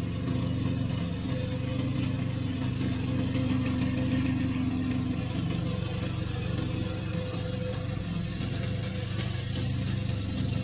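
Loncin 15 hp gasoline engine of a remote-control tracked mower running steadily as the mower cuts through tall dry grass.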